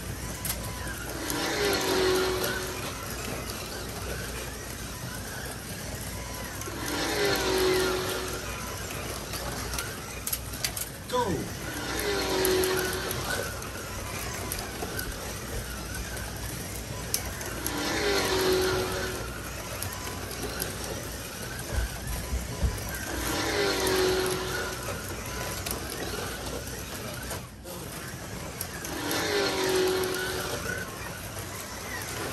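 A 1/24 scale Carrera digital slot car passing close by about every five and a half seconds, six times, each pass a rising and falling swell of electric motor whine and wheel noise on the plastic track, over a steady running sound of other cars further round the circuit.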